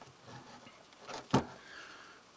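Quiet outdoor background with one brief sharp knock just past the middle.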